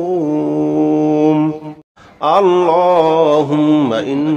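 A voice chanting an Arabic dua in long, drawn-out melodic notes. It breaks for a short breath just before the middle, then starts the next phrase on another long held note.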